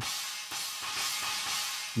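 A sampled Sabian AAX Chinese cymbal in the Superior Drummer 2 drum software, triggered from a MIDI keyboard, washing on as it rings out.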